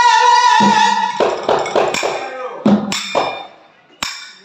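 A woman's long held sung note through a microphone ends about half a second in, followed by a quick run of drum strokes and cymbal hits that die down near the end.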